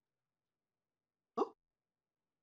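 Silence, then a single short, rising 'huh?' about a second and a half in.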